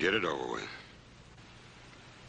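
A man's voice says one short word, then only a faint steady hiss.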